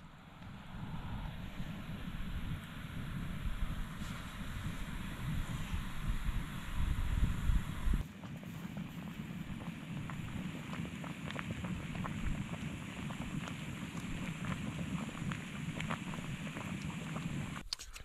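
Wind rumbling on the microphone over the steady hiss of a Jetboil gas stove heating water. About eight seconds in the sound changes and a run of light clicks and rustles follows as a boil-in-the-bag pouch is handled at the pot.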